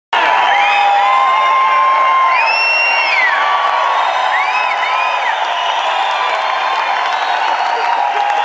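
Concert audience cheering and applauding, with whoops and several piercing whistles in the first five seconds, calling the band back for an encore.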